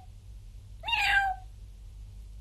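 A single drawn-out meow, given about a second in to call a cat, rising briefly then falling in pitch.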